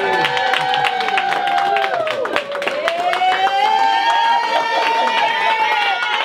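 Guests cheering and clapping, with several long, held shouts ringing out over dense applause, the crowd's response to the newly married couple being presented.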